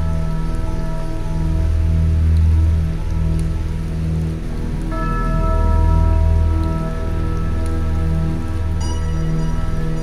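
Psychedelic trance music: long low synth notes that change every second or two, with higher sustained synth tones that drop out for a few seconds and then return, under a hissing, rain-like noise texture. No drum beat.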